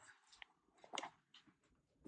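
Near silence with a few faint, short clicks from the phone camera being handled and moved.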